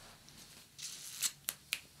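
Quiet, with a brief soft rustle a little under a second in, followed by three small sharp clicks.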